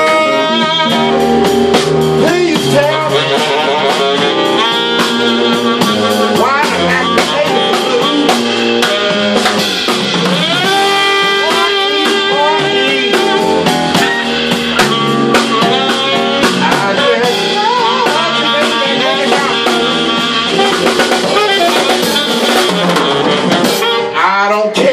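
Live blues band playing an instrumental passage: fretless electric bass, keyboards and drum kit with cymbals, under a wavering, bending melodic lead line.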